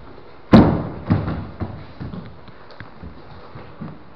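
Bodies hitting a training mat during jiu-jitsu grappling: one loud heavy thud about half a second in, then several smaller thumps and scuffles. The thuds come up strongly because the camera sits on the mat.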